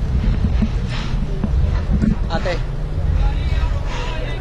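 Wind buffeting the microphone in a steady low rumble, with brief snatches of people talking nearby.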